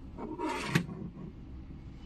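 A stainless steel carriage bolt being picked up off a wooden desk: a brief scraping rustle ending in one sharp knock, a little under a second in.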